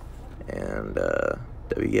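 A man burps: one low belch lasting nearly a second, starting about half a second in. A short spoken word follows near the end.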